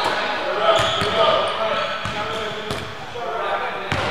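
Basketballs bouncing on a hardwood gym floor, several irregular bounces as players catch and dribble, echoing in a large gym. Players' voices are heard underneath.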